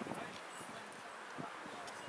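Faint, scattered shouts from players and spectators at an outdoor rugby match, over a steady haze of field noise.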